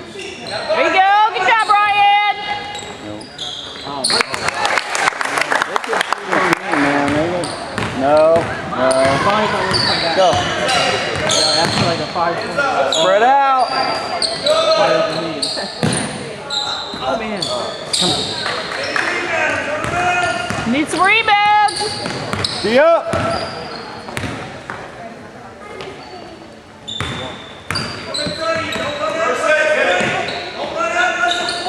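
Indoor basketball game sounds on a hardwood gym court: the ball bouncing as players dribble, sneakers squeaking in short sharp chirps, and spectators' voices throughout.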